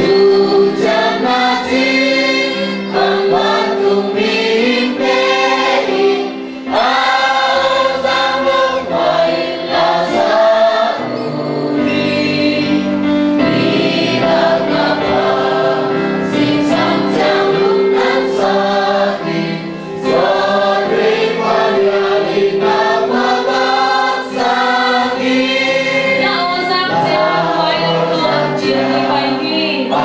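A congregation singing a hymn together in many voices, phrase after phrase, over steady held low notes.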